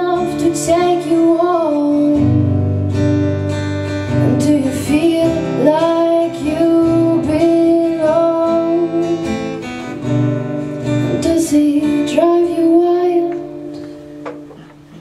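A woman singing a slow melody to acoustic guitar accompaniment, live.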